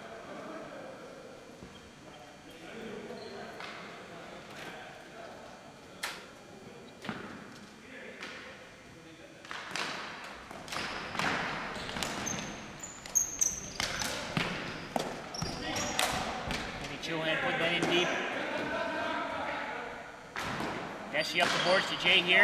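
Ball hockey in play on a gym floor: scattered sharp clacks of sticks and the hard ball striking the floor and boards, busier in the second half, with players' voices calling out.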